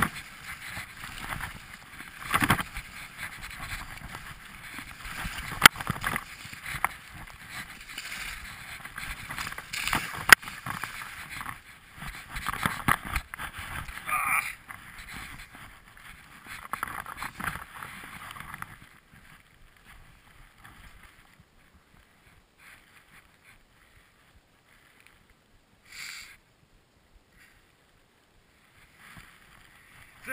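Skis sliding and scraping over snow in a steady hiss that swells with each turn, with a few sharp clicks along the way. About two-thirds of the way in it drops to near quiet, broken by one short noise.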